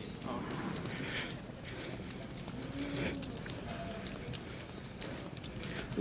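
Footsteps and light clicks on a hard concrete floor, irregular and fairly quiet, with faint voices in the background.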